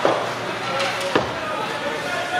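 Two sharp knocks of hockey sticks and puck during ice hockey play, the first right at the start and louder, the second about a second later.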